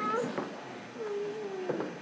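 A single drawn-out vocal call from someone in the gym, starting about a second in and sagging slightly in pitch as it is held, after a brief high squeal at the start, over low gym hubbub.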